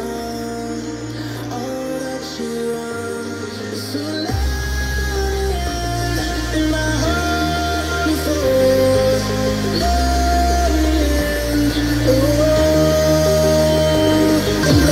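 Music played back through a pair of Edifier R1700BT bookshelf speakers streaming over Bluetooth, with slow melodic notes that grow gradually louder. Deep bass notes come in about four seconds in.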